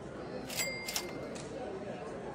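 Two sharp clicks about half a second apart, with a brief high tone between them, over the low murmur of a crowded hall.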